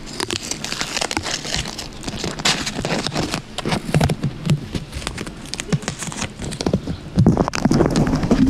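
Long fingernails and a thin white strip scratching and rubbing on a foam microphone cover, close to the microphone: an irregular run of scratchy crackles and soft thumps that grows louder near the end.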